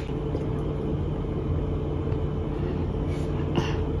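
A steady low hum and rumble, with a couple of faint brief sounds near the end.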